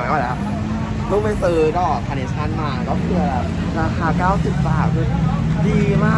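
People talking over the steady low hum of an idling vehicle engine.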